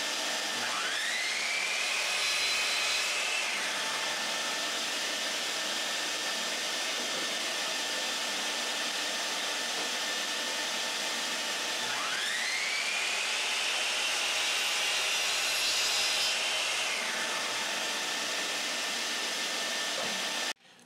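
Bosch CM10GD compact miter saw started twice for crosscuts in pine boards: each time the motor whine rises quickly, holds for a few seconds, then winds down. A steady rush of dust extraction runs underneath.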